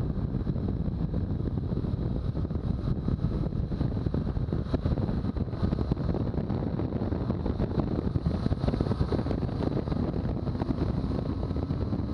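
Wind rushing over the camera microphone at road speed, over the steady drone of a BMW R1200GS's boxer-twin engine and its tyres on the pavement. It runs even throughout, with no gear changes or revving.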